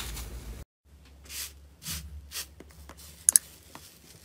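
Slime squished by hand, then after a short break a run of soft crinkly swishes and crackles, with two sharp snaps about three seconds in, as a crusted 'iceberg' slime is pressed with the fingers.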